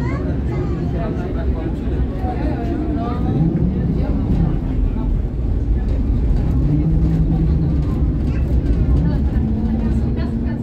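A city tram running along street rails, heard from on board: a steady low rumble with the electric traction motor whining in rising, then steady, tones as it pulls along. Voices can be heard faintly in the background.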